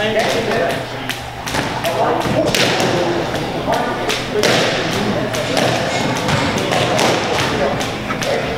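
Irregular thuds and taps, several a second, in a gym, over people talking in the background.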